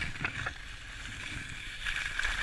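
Skis sliding over packed snow, a steady hiss with a few sharper scrapes in the first half second.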